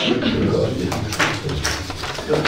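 Indistinct, low murmured voices in a meeting room, with a few sharp clicks or rustles about a second in.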